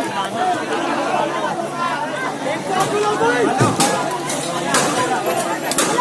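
A crowd of bystanders talking over one another, several voices at once, with a few short sharp knocks during the second half.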